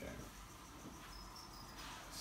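Quiet room tone with a few faint, short high-pitched chirps, one near the start and one about a second and a half in.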